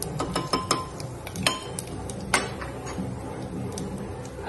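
A metal spoon clinking against an aluminium pressure cooker while stirring spices frying in oil: a quick run of ringing clinks in the first second, then two more single clinks about one and a half and two and a half seconds in.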